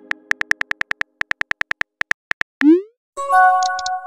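Text-messaging sound effects: a fast run of about twenty phone-keyboard clicks, then a short rising swoosh of a message being sent, then a chime of several notes as a message arrives, ringing on at the end.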